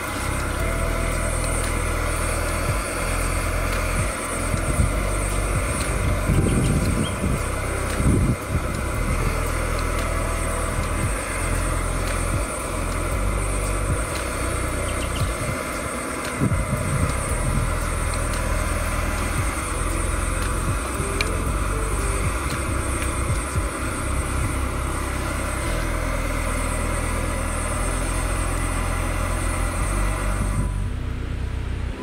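Water at a hard rolling boil in a saucepan, a steady bubbling with a low rumble beneath, as an egg is poached in it. The churning grows louder for brief moments about six to eight seconds in and again around the middle.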